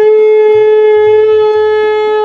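Conch shell (shankha) blown in one long, steady note, the ritual blowing of the conch in Hindu worship.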